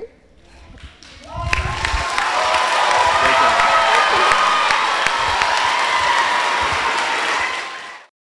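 Audience applause with some voices calling out, breaking out about a second and a half in after a brief lull and stopping abruptly at the end.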